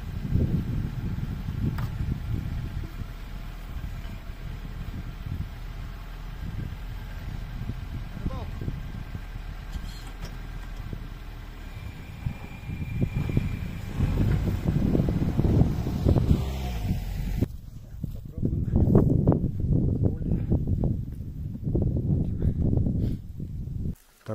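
Quad bike engine running at a low, steady idle, then a louder, uneven low rumble over the last several seconds.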